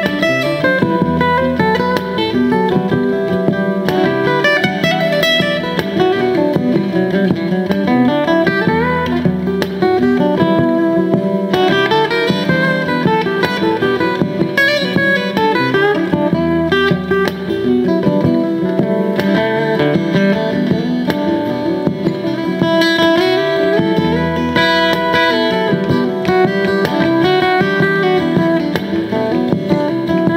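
Acoustic steel-string guitar improvisation played over layered, repeating guitar loops from a Boss RC-50 loop station: dense, steady fingerpicked and strummed notes with melodic figures that recur.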